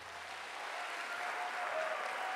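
Theatre audience applauding at the end of a song, the clapping swelling louder through the moment.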